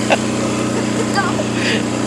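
Small off-road vehicle engine running at a steady speed, with a short high chirp about a second in.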